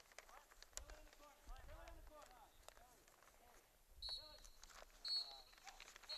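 Faint distant voices from across the field, then a referee's whistle giving two short blasts about a second apart, with a longer blast starting right at the end: the final whistle ending the game.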